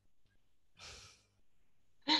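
Near silence with one short, faint exhale or sigh through a headset microphone a little under a second in.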